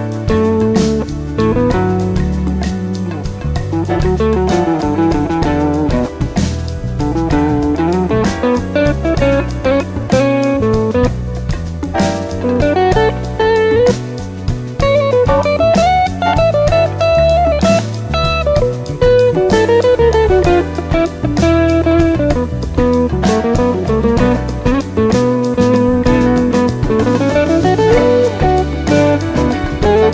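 Electric guitar playing a melodic lead line in a rock piece, over a backing track with a steady drum beat.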